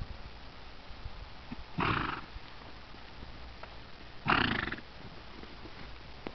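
Two loud snorts from a horse-family animal, each about half a second long and about two and a half seconds apart, with a fluttering, blowing texture.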